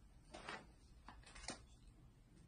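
Faint rustling and handling of packaging as items are dug out of a subscription box, with two soft clicks about a second apart.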